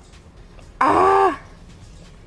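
A woman's short, loud groan, held for about half a second and falling in pitch at the end.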